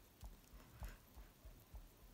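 Faint, soft taps of a sponge dauber dabbing ink through a paper stencil onto card, about three a second.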